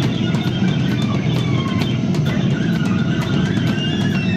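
Live rock band playing loudly: electric guitar and bass over a drum kit, with cymbal strokes keeping a regular beat.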